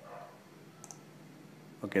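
A single computer mouse click a little under a second in, over a faint steady hum.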